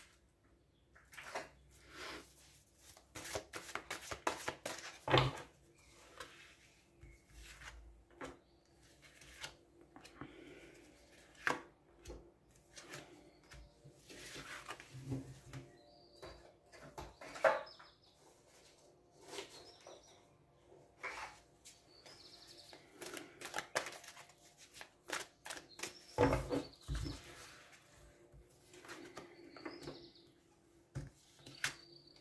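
Oracle cards handled on a wooden tabletop: gathered up, shuffled and laid down in turn, a string of irregular soft clicks, slaps and sliding rustles.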